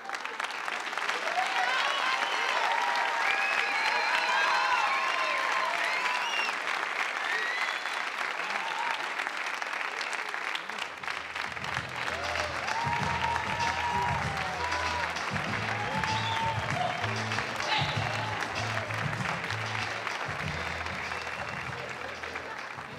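A theatre audience applauding and cheering loudly, the cheers strongest in the first few seconds. About eleven seconds in, music with a pulsing bass line starts up under the applause.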